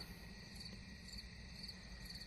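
Faint crickets chirping, short high pips repeating about once or twice a second over a steady high-pitched trill.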